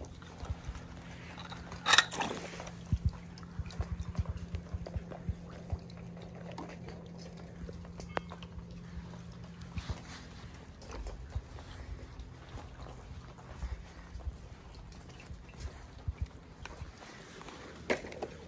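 Quiet background with a steady low hum and scattered small clicks and knocks, the sharpest one about two seconds in.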